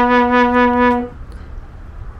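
A brass 'sad trombone'-style sound effect: the long final note of a descending 'wah-wah-wah-waah' figure, held steady and stopping about a second in. After that there is only a quieter outdoor background hiss.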